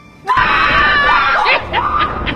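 Men screaming in fright as a figure in a white sheet rises up at them: several voices break out suddenly about a third of a second in, then turn to shorter shouts about a second later.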